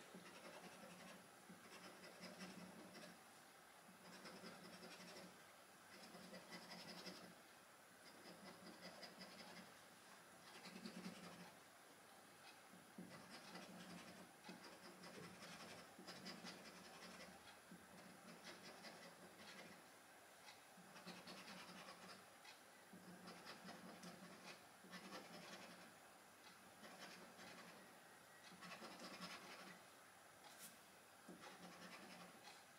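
Faint, repeated scratching of a hand-held scratcher rubbing the scratch-off coating off a lottery scratchcard, in strokes of a second or two with short pauses between.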